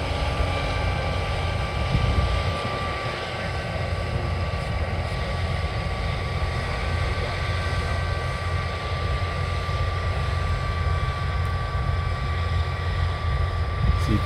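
Old Case IH 1680 Axial-Flow combine running while harvesting and spreading straw. It makes a steady, even engine drone with a constant high whine over it.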